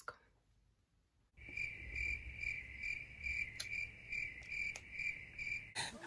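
Crickets chirping in a steady, even rhythm of about three chirps a second, starting a second and a half in after a moment of silence. A sudden loud sound cuts in just before the end.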